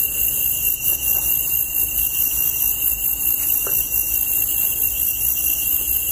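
Field insects chirring with a steady high-pitched tone, over a low wind rumble on the microphone.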